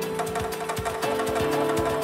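Afro house DJ mix: a steady kick drum about twice a second under sustained synth tones. The crisp high percussion drops out at the start while the kick and pads carry on.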